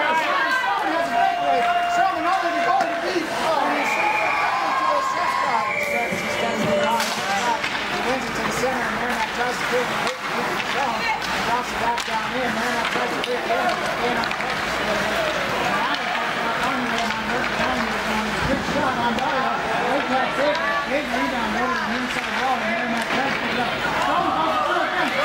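Several people talking at once in the stands of an ice rink, with a few sharp clacks of sticks and puck now and then.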